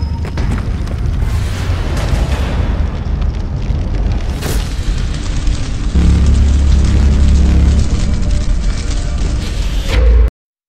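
Cinematic logo-intro sound effects: a continuous deep rumble with crackling, fire-like noise on top and a brief swish midway. About six seconds in a heavier low boom hits and holds for about two seconds, as the logo appears.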